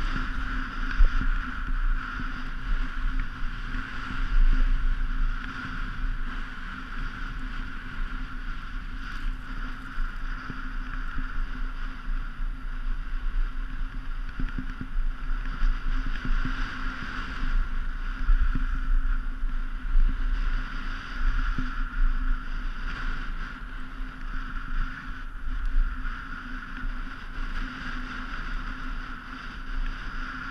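Wind buffeting a GoPro camera's microphone during a downhill ski run, a steady, rumbling rush, with the sound of skis sliding on packed snow.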